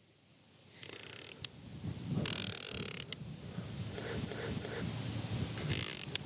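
Plastic head of a Rain Bird 5000 rotor sprinkler being turned by hand, with a screwdriver in its arc-adjustment slot: faint rubbing and scattered small plastic clicks as the right stop is set, with a sharper click about a second and a half in.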